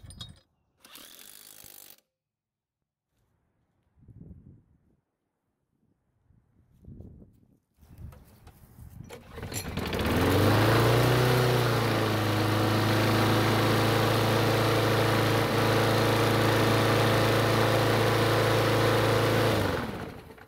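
A Yard Machines push mower's small engine starts about ten seconds in, climbs quickly in speed, settles and runs steadily at a high speed, then cuts off suddenly near the end. It is running a bit too fast, a sign that the governor spring needs adjusting.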